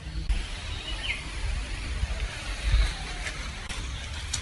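Outdoor ambience in undergrowth: a low rumble and a faint high hiss, with a single short bird chirp about a second in and a few light clicks near the end.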